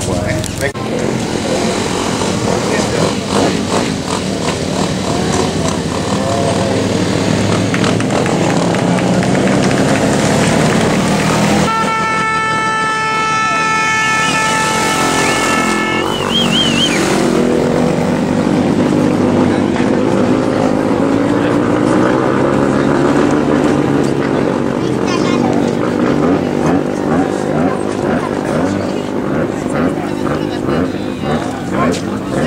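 Enduro motorcycle engines running and revving amid a crowd's chatter. About twelve seconds in, a steady horn tone sounds for about four seconds.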